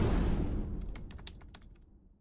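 News-intro sound effect: the tail of a low rumbling hit dies away while a quick run of keyboard-typing clicks plays and fades out, a typing effect for the tagline text appearing on screen.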